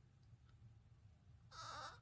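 One short, loud crunch of a flaky, chocolate-glazed pastry crust being bitten, about a second and a half in and lasting under half a second, over a faint low room hum.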